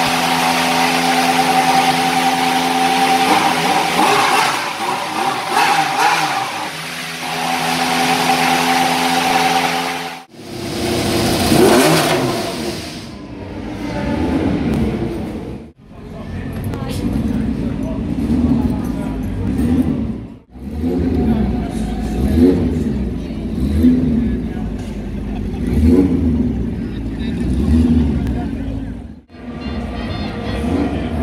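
Formula 1 car engines running in a paddock garage. For about the first ten seconds one engine holds a steady, high drone. Then a classic F1 car's engine is fired up and blipped over and over, its revs rising and falling every second or two.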